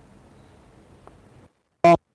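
Faint room tone that cuts off to dead silence about one and a half seconds in, then a single short syllable of a man's voice just before the end.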